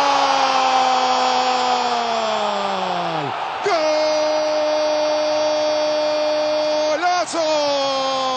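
Spanish-language football commentator's drawn-out goal cry: one long held note that sags and breaks off about three seconds in, then a second long, steady cry to about seven seconds in, followed by the start of another.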